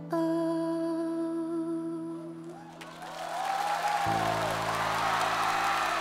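A woman's voice holds one long, steady hummed or sung note over soft accompaniment, closing a pop ballad. The note ends about three seconds in. A swelling wash of noise follows, and a deep low tone enters about a second later.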